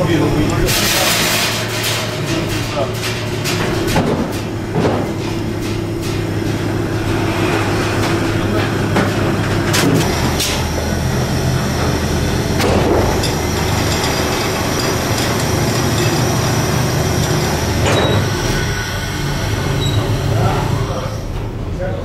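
Lifting machinery running with a steady low hum while timber packs are loaded into a shipping container, with sharp metal knocks and clanks now and then; workers' voices come and go.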